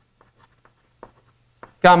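Chalk writing on a blackboard: a few faint, short taps and scratches as the letters are formed.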